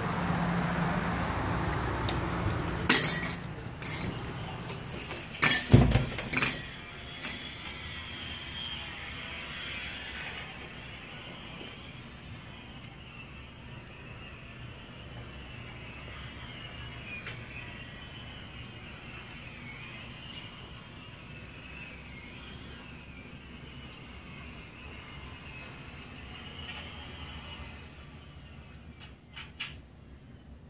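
Traffic noise outdoors, then a glass shop door opening and swinging shut, with sharp clicks about three seconds in and a cluster of knocks and a low thud about six seconds in. After that a quiet interior with a faint, wavering high tone.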